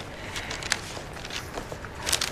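A series of light, irregular taps and rustles, with one sharper click a little under a second in.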